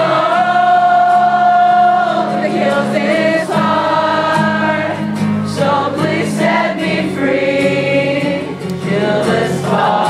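Live acoustic rock song: acoustic guitar chords under long, held sung notes, with many voices singing together like a choir, as if the audience is singing along.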